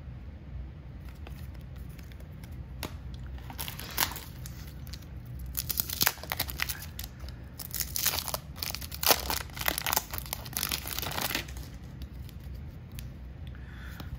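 A wax-paper baseball card pack wrapper being torn open and crinkled. There is a dense run of crackling tears from about four to eleven seconds in, with a few scattered clicks before it.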